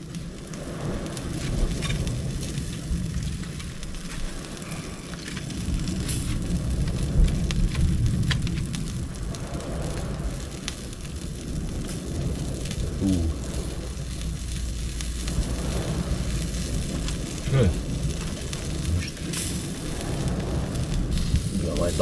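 Steady outdoor noise of wind rumbling on the microphone and sea washing on the rocks, with a few faint clicks and crackles from a small smouldering wood fire.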